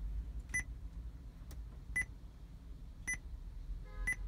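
Touch-confirmation keypad beeps from a Joying Android car head unit's touchscreen: short, high beeps, one for each tap on the screen, three spaced about a second apart and a fourth at the very end, over a low steady hum.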